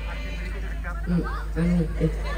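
Brief voice sounds over a stage sound system: a few short syllables and a quick vocal glide, with a low room and crowd hum underneath.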